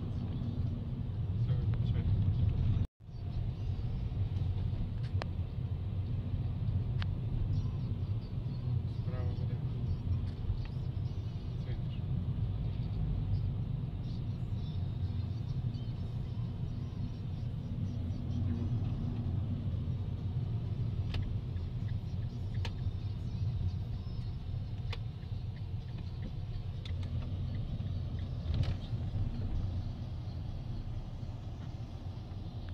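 Car engine and road noise heard from inside the cabin while driving: a steady low rumble. The sound cuts out completely for a moment just before three seconds in.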